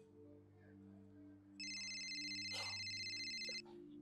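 A mobile phone ringtone: a high, fluttering electronic ring lasting about two seconds, starting around halfway through, signalling an incoming call. A soft, steady low music drone sits underneath.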